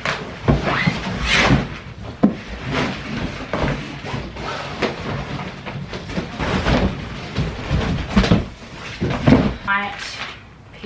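A large cardboard mattress box is tipped upright and dragged, its cardboard flaps and sides scraping and knocking, as a rolled, plastic-wrapped memory-foam mattress slides out, with the wrapping crinkling. The noises come in irregular bursts about every second or so.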